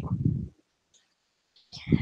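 Computer mouse clicking as a slide thumbnail is selected, picked up by a headset or laptop microphone along with low breath noise: a low rumble in the first half second, silence, then a click and breath near the end.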